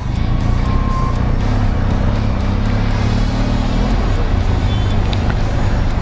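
Benelli TRK 502X's parallel-twin engine running at low speed in slow, packed city traffic, with the steady low rumble of surrounding vehicles. Background music plays underneath.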